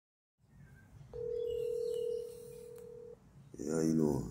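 Telephone ringback tone heard through a smartphone on speakerphone while an outgoing call rings: one steady tone lasting about two seconds. A voice speaks briefly near the end.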